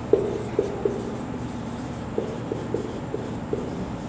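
Marker pen writing on a whiteboard: short, irregular squeaks and taps as a word is written, over a steady low background hum.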